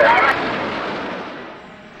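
Jet aircraft passing overhead: a broad rushing noise that fades steadily away over two seconds, with the last syllable of a man's voice right at the start.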